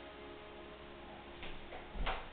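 The last chord of the backing accompaniment fading out at a low level, followed near the end by a couple of soft knocks.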